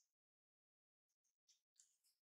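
Near silence, broken by a few very faint, brief high-pitched chirps about a second in and near the end.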